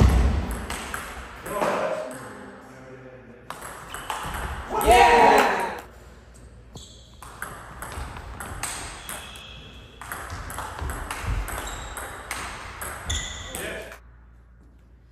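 Table tennis rally: the ball clicking sharply off the paddles and the table again and again. A loud voice shout about five seconds in, and a shorter one about a second and a half in.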